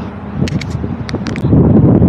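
A few sharp clicks and knocks as the folding bike with its thrown chain is handled, then a loud low rumble of wind or handling noise on the microphone from about halfway.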